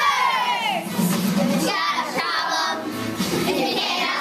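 A group of children shouting and cheering together, many voices at once.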